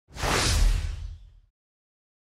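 Intro whoosh sound effect with a deep boom beneath it, swelling in quickly and fading out by about a second and a half, accompanying a logo reveal.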